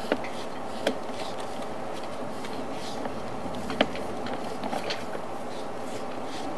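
Steady hiss with a few sharp clicks as a sewer inspection camera's push cable is fed down the drain line.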